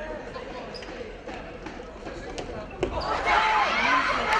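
Futsal ball being kicked and bouncing on a wooden indoor court, with echo from the hall. A sharper, louder kick comes just before three seconds in, followed by louder shouting.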